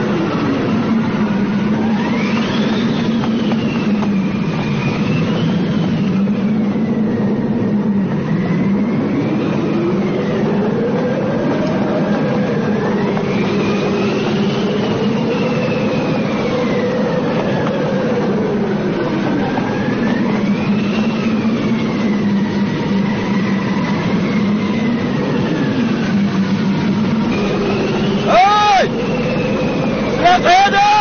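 Film soundtrack: a steady low drone with slow, wavering whistling tones that slide up and down above it, and a short, sharp sliding cry near the end.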